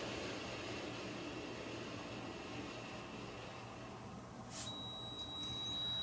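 A steady breath blown into the mouthpiece of a small portable breathalyzer for about four seconds. Shortly after the breath stops, the breathalyzer gives a steady high-pitched beep tone.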